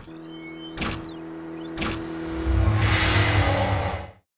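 Synthesized intro sting of sound effects and music: sharp hits about a second apart, sweeping whooshes and a held tone, building from about halfway through into a loud, bass-heavy swell that cuts off suddenly at the end.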